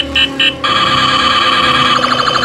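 Electronic beeping tune from the sound chip of a light-up Daiso 100-yen spinning top as it spins. About half a second in, the beeps change to a fast, steady warbling trill.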